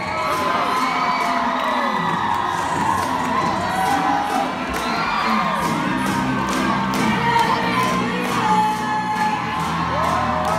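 A crowd of students cheering and shouting, many voices at once, with music underneath.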